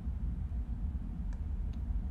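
Steady low hum of room and microphone noise, with two faint computer mouse clicks a little past the middle.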